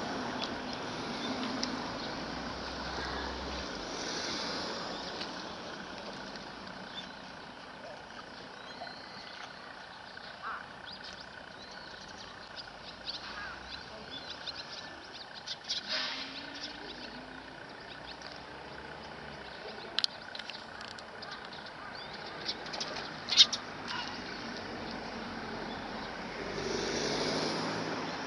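Steady outdoor background noise with scattered short sharp clicks, the loudest about 23 seconds in; the noise swells briefly at the start and again near the end.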